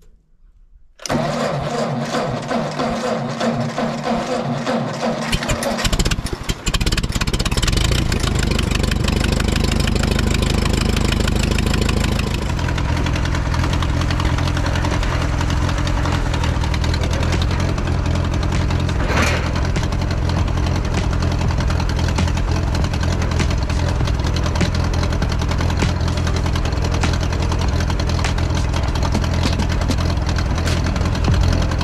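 Tractor engine cranked over by its starter for about five seconds, catching about six seconds in. It runs at a raised speed at first, then settles into steady running about twelve seconds in.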